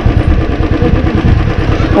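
Motorcycle engine running at low road speed, its exhaust pulses making a steady rapid beat.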